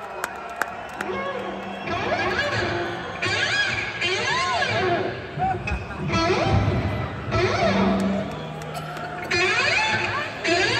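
Live hard-rock band with electric guitars playing wailing lead lines full of string bends that swoop up and down in pitch, over held bass notes. Crowd noise sits underneath.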